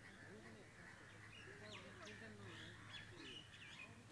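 Near silence: faint distant voices and a few brief bird chirps over a steady low hum.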